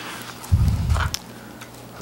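A short low thump about half a second in, followed by a brief faint click; no speech.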